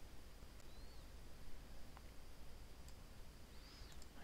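Quiet room tone with a few faint clicks of a computer mouse.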